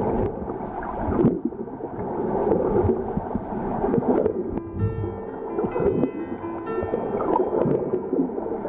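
Muffled gurgling and sloshing of water heard through an underwater camera's housing. From about halfway, steady musical notes at several pitches sound over it.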